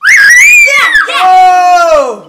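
Children screaming with excitement, loud and high-pitched, cheering a won guess. The screams break out suddenly, and one long held scream fills the second half and trails off.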